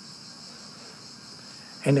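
Steady high-pitched whine, unchanging throughout, heard in a pause in speech; a man's voice starts again just before the end.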